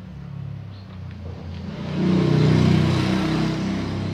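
A motor vehicle's engine, low and humming, swelling in loudness about halfway through and then easing slightly.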